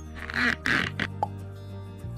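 Cartoon sound effects over steady background music: two short noisy bursts in the first second, then a brief high blip, as the animated car's wheel is changed.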